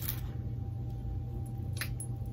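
Steady low room hum, with one short sharp click near the end as a brush-tip click-pen concealer is opened and worked in the hands.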